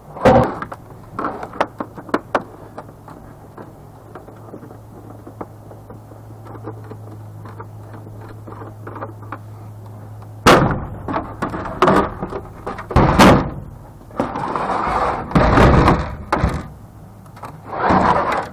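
Plastic back housing of a CRT computer monitor being knocked loose and pulled off: a sharp knock at the start, then small clicks, then a run of loud knocks, thuds and scraping plastic in the second half. A low steady hum runs under the first half and stops when the loud knocking begins.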